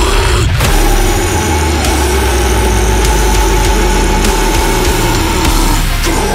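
Deathcore song: one long held guttural scream, sustained for about five seconds over a heavy, distorted band backing with a strong low end.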